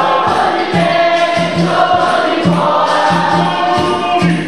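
Capoeira roda music: a group singing the chorus together over berimbaus and an atabaque drum keeping a steady beat about twice a second.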